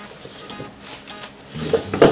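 Plastic bag crinkling and rustling as a knife slits it open and frozen pork bones and pork feet slide out into a wok. Background music comes back in near the end.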